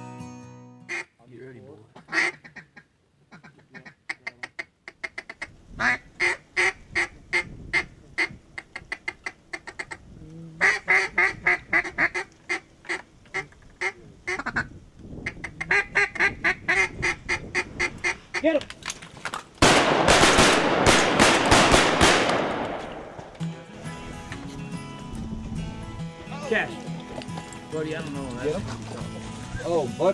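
Mallard quacking in three runs of rapid quacks a few seconds long, then a loud rushing noise that lasts about three seconds and fades.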